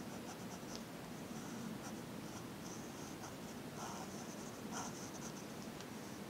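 Pencil scratching on paper in short strokes, in quick runs with brief pauses. The strokes stop shortly before the end.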